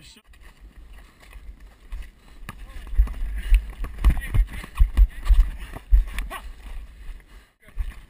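Low wind rumble on a head-mounted action camera's microphone, with a run of heavy low thumps from about three to six seconds in.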